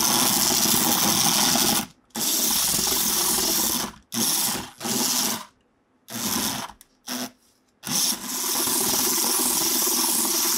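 Small electric motor of a battery-powered toy skateboard whirring. It stops briefly about two seconds in, cuts in and out several times in the middle, and runs steadily again from about eight seconds.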